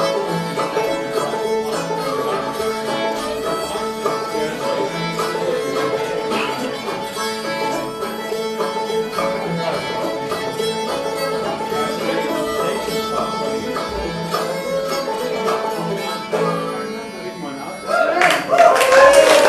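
Old-time Appalachian string band playing a tune live, with the fiddle leading over the banjo. The tune winds down near the end.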